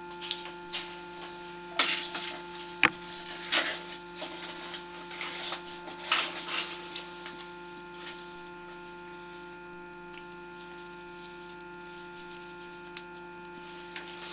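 Steady electrical hum of several tones from a sewer inspection camera rig, with irregular scraping and knocking over the first half, one sharp knock about three seconds in, as the camera head is pushed into an old cast iron sewer pipe; after that only the hum.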